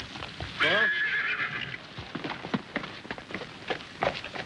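A horse whinnies once, starting about half a second in and lasting about a second, falling in pitch, over the steady clip-clop of hooves.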